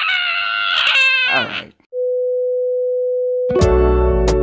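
A child's long, high-pitched squeal that slides down in pitch and breaks off, followed by a steady electronic beep tone held for about a second and a half. Background music begins near the end.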